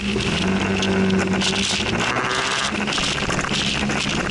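Scooter engine opening up and pulling away, its note rising a little over the first two seconds, with wind and road noise building as speed picks up.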